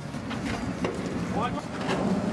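A motorboat engine running steadily under wind on the microphone, with a brief voice about one and a half seconds in.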